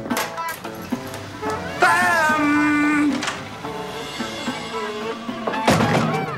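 Background music with held notes and a wavering melody line about two seconds in, with a short loud burst of sound near the end.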